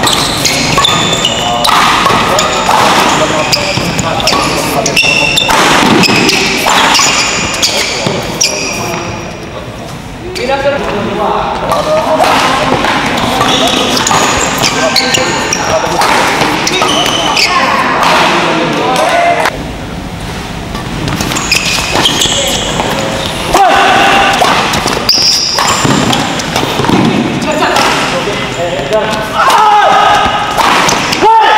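Badminton doubles rallies in a large echoing hall: repeated sharp racket strikes on the shuttlecock, including smashes, with short squeaks of court shoes. Shouts and chatter from players and spectators run throughout, and the sound dips briefly twice between points.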